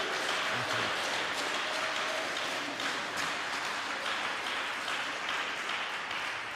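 Congregation applauding, steady clapping from many hands that begins to die away near the end.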